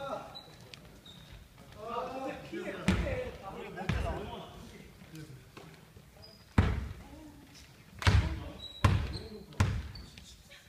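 A basketball bouncing on a hardwood gym floor, with about six separate bounces that echo in the large hall. The last three come close together near the end.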